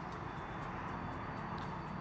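Low, steady background noise, a hiss with a faint low hum, from an open live-broadcast microphone line.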